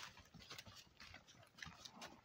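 Faint, irregular hoofbeats of a Haflinger horse cantering over leaf-covered dirt, heard from a distance as a few soft thuds.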